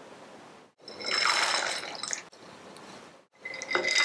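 Dried soup ingredients tipped from a small ceramic dish into a clay pot of water, splashing and plopping in. There are two pours, one about a second in and another near the end, which is lotus seeds dropping in.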